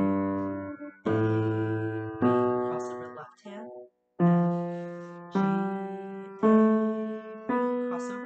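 Piano playing single notes stepping up F, G, A, B, one note about every second, each left to ring and fade. After a short pause about three and a half seconds in, the same four notes step up again an octave higher.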